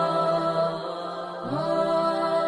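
Intro music of a single voice chanting long held notes that bend slowly in pitch, with a dip and rise about one and a half seconds in.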